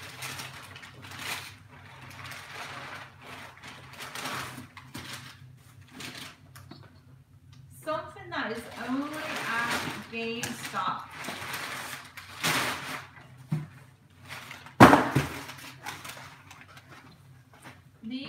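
Brown packing paper rustling and crinkling in stretches as it is pulled and pushed about inside a cardboard box, with one sharp thump about 15 seconds in.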